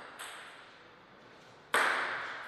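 A table tennis ball striking a hard surface: a faint tick just after the start, then one loud, sharp ping near the end with a short ring.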